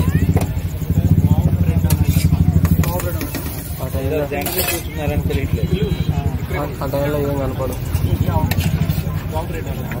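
A low engine drone runs throughout, with voices talking over it in the middle and a few sharp metal clinks of a spoon working a frying pan.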